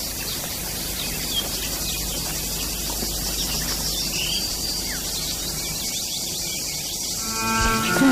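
Steady outdoor ambience of insects with a few short bird chirps, over an even hiss and a low hum; near the end a sustained pitched sound begins.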